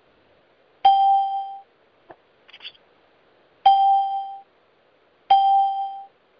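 A conference-call line's chime: one bell-like tone sounding three times, each starting sharply and dying away in under a second, heard over a telephone line.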